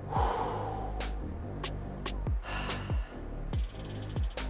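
A man breathing hard, catching his breath between heavy dumbbell sets, with a loud exhale at the start and another a little over halfway through, over background music with a steady drum beat.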